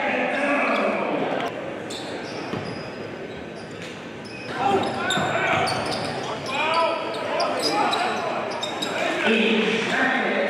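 Basketball game sounds on a gym's hardwood court: the ball bouncing, sneakers squeaking and voices echoing in the large hall. The activity grows louder about halfway through.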